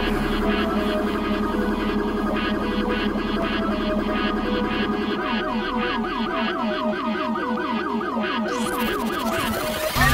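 Electronic intro music of warbling, siren-like synth tones. About halfway through the tones start sweeping up and down, about four times a second. A rising hiss climbs near the end.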